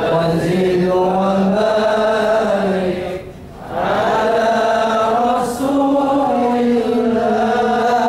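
A male voice reciting the Quran in long melodic phrases, each held on one breath. There is a pause for breath about three seconds in, and the next phrase begins at a higher pitch.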